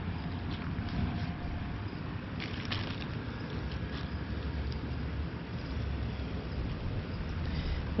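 Steady low outdoor rumble with faint rustling of paper wrapping and a plastic bag as a plant's moss-packed root ball is unwrapped by hand.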